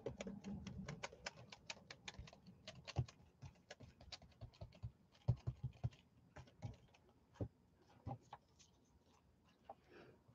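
Faint, irregular light taps and clicks of hands handling art-journaling tools and a plastic stencil on a desk. The taps come quickly at first, then thin out, with a short pause near the end.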